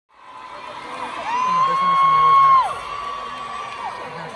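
Concert crowd screaming and cheering, fading in from silence. One high-pitched scream rises, holds for about a second and a half, then falls away, with other screams around it.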